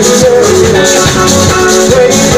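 Live band playing amplified music, with keyboard, electric bass and drums, loud and steady. A rhythmic high hiss, like a shaker, repeats about three times a second over the held notes.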